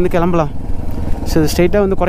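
A Yamaha R15 single-cylinder sport bike riding slowly, its engine a steady low rumble, with a voice over it except for a short break near the middle.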